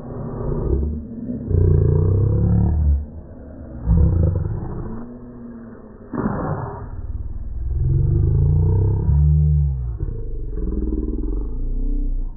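A cartoon voice slowed far down and pitched very low, so the words turn into deep, drawn-out, unintelligible sounds. A short hissy burst comes about six seconds in.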